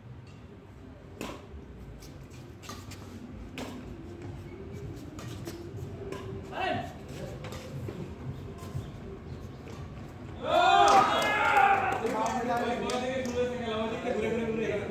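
Badminton rackets striking a feathered shuttlecock during a doubles rally: sharp hits about one to two seconds apart. From about ten seconds in, men's voices talk and call out loudly, louder than the hits.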